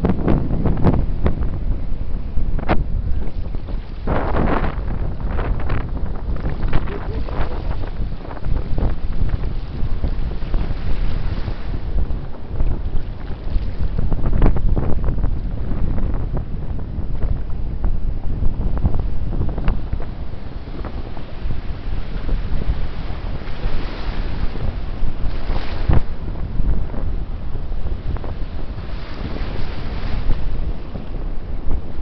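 Surf breaking and whitewater churning around the camera, with heavy wind buffeting on the microphone. The noise swells louder as waves break, around four seconds in and again around fourteen seconds in.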